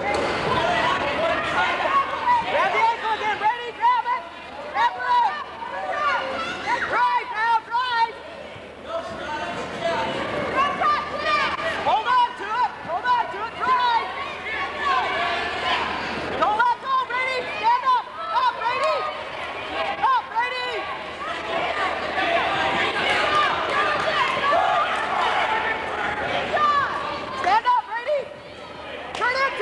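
Voices of several people in the crowd talking and calling out at once, overlapping throughout.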